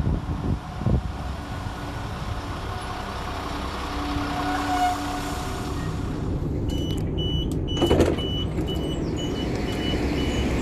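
Class 172 diesel multiple unit running into the platform and slowing, with a brief squeal about five seconds in. After that the door warning beeps sound, a high beep about twice a second, and a loud thump comes about eight seconds in as the doors shut.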